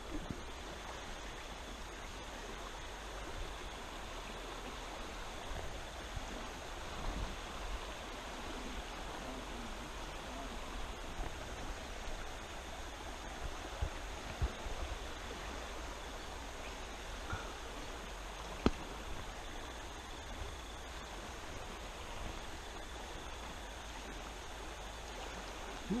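Steady rush of flowing river water, with a few faint knocks scattered through it, the sharpest about nineteen seconds in.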